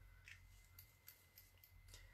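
Near silence: faint room tone with a few soft, light ticks from small objects being handled.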